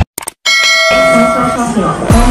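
A bell-like chime rings out about half a second in after a brief silence, holding several steady notes for about a second, with a voice coming in beneath it.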